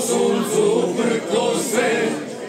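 A men's folk singing group singing unaccompanied, several male voices in harmony holding long, slowly moving notes.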